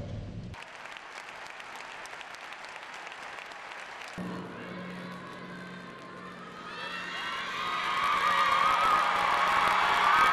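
A large arena crowd applauding after a speech, with music entering about four seconds in and swelling louder with the applause over the last few seconds.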